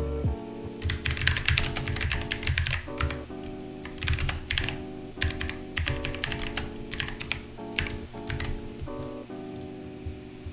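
Typing on a computer keyboard: a fast run of key clicks in the first few seconds, then scattered keystrokes, over soft background music.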